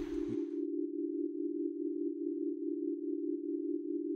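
A steady, low sustained drone note, unchanging in pitch and level, as in an ambient background music score.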